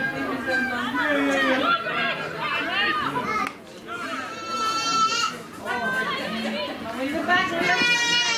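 High-pitched girls' voices shouting and calling out across a camogie pitch, with two long held shouts, one about four seconds in and another near the end.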